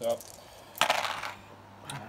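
A handful of six-sided dice thrown onto a gaming table, clattering as they land and tumble about a second in, with one last click near the end.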